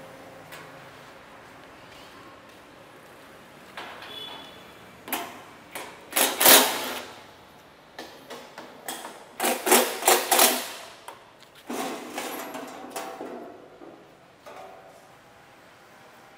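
Stainless-steel sheet cover being unfastened and lifted off the side box of a cashew cutting machine. Metal clatters and scrapes in three loud spells, between them quiet. The machine is not running.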